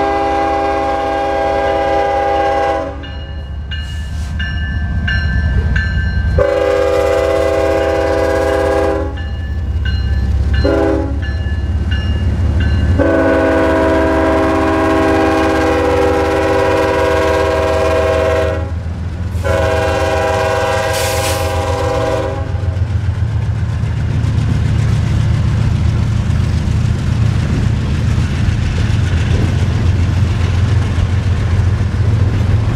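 Norfolk Southern diesel locomotive's multi-note air horn sounding the grade-crossing signal: two long blasts, a short one and a final long one with a brief break in it, while a crossing bell dings in the pauses. The horn then stops as the locomotives pass close by with a low engine rumble and steady wheel noise on the rails.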